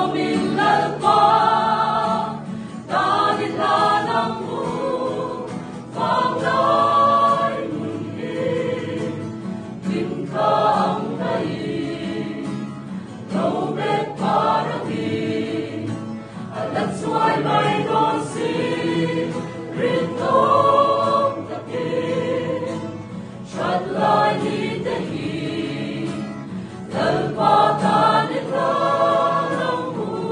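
Mixed choir of men and women singing a gospel hymn in Mizo, in phrases of a few seconds, with an acoustic guitar accompanying.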